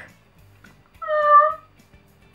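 A single meow about a second in, lasting about half a second and fairly level in pitch.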